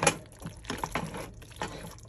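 Macaroni and cheese being stirred with a spoon in a metal pot, a wet squelching with irregular knocks and scrapes of the spoon against the pot, the first knock the loudest.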